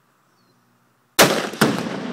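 A .270 rifle shot and the tannerite target exploding a split second later: two sharp, very loud bangs less than half a second apart, about a second in, followed by a long rolling echo dying away.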